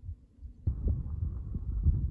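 Wind buffeting the camera microphone: a sudden low, irregular rumble with pulsing gusts that starts about two-thirds of a second in.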